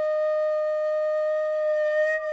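A flute holding one long, steady note.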